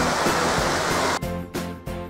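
Rushing water of a rocky stream over background music; the water cuts off suddenly a little over a second in, leaving only the music with its steady beat.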